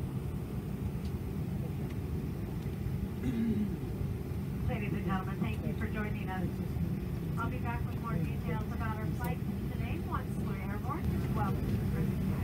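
Steady low rumble in the cabin of a taxiing Boeing 777-200, with indistinct voices talking from about five seconds in.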